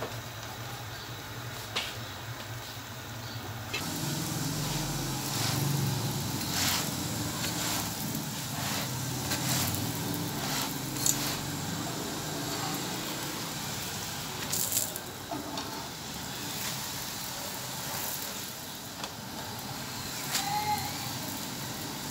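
Radish-stuffed paratha frying in oil on an iron tawa: a steady sizzle and crackle that grows louder about four seconds in, with scattered light clicks.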